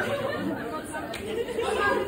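Indistinct chatter and talk from people in a hall, several voices at once with no clear words.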